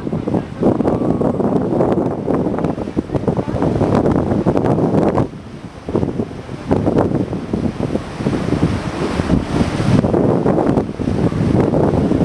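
Wind buffeting the microphone on a moving lake cruise boat, rising and falling in gusts, with a brief lull about five seconds in.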